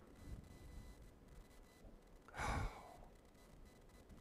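A man's audible breath, one short sigh-like exhale about two and a half seconds in, against a quiet room.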